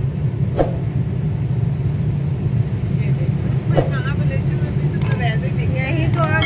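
Steady low rumble of a car's engine and tyres on a wet road, heard inside the cabin, with faint voices under it.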